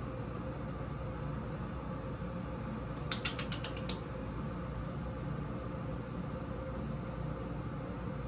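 A quick run of about eight small ratcheting clicks, lasting about a second, from a small plastic makeup tube being worked in the hand, over a steady low room hum.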